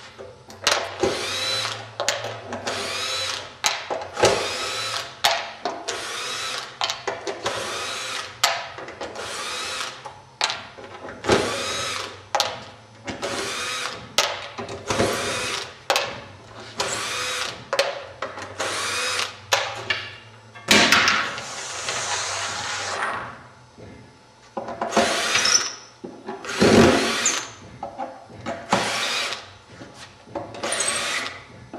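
Cordless drill-driver backing wood screws out of batten strips, one screw after another: a long run of short bursts, each a second or less, with the motor's whine rising as it spins up. About 21 seconds in there is a longer hissing burst.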